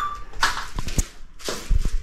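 Plastic sheeting rustling and crinkling as it is pressed and smoothed over a bird cage's floor tray, with a few sharp clicks and low knocks of the tray, the loudest knocks near the end.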